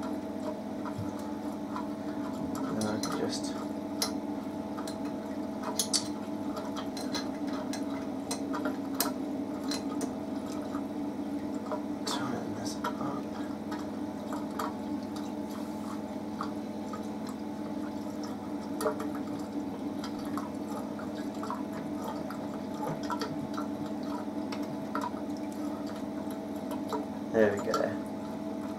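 Reef aquarium running: water trickling and dripping into the overflow weir over a steady hum from the tank's pumps. Scattered light clicks come from hands handling the plastic light mount on the tank rim.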